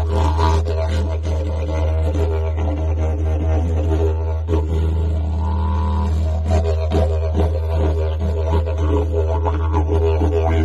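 Didgeridoo playing a continuous low drone with shifting overtones; a higher overtone is held briefly about halfway through, and rhythmic pulses break up the drone a couple of seconds later.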